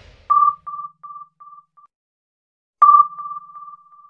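Sonar-style ping sound effect: a single high tone struck twice, about two and a half seconds apart, each strike trailed by a string of fading echoes.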